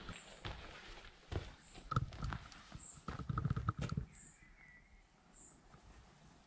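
Footsteps on a floor littered with rubble and debris: irregular steps knocking and crunching, bunched in the middle and thinning out towards the end.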